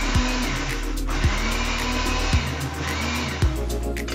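Countertop blender running, blending fruit with water, with a brief dip about a second in and stopping shortly before the end. Background music with a steady beat plays over it.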